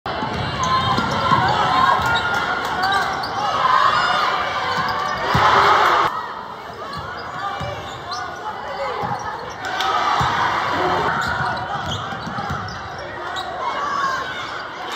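A basketball dribbling and bouncing on a hardwood gym court, scattered thuds under the constant voices and shouts of the crowd in the hall. A louder burst of crowd noise about five seconds in cuts off suddenly.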